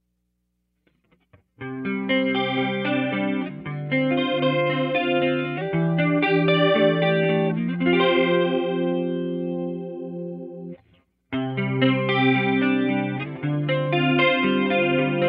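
Electric guitar (Gibson Les Paul with Seymour Duncan pickups) played through an Eventide H9 effects pedal into a Peavey Classic 30 tube amp. Chords are strummed and left to ring starting about a second and a half in; they break off briefly near the end and then resume.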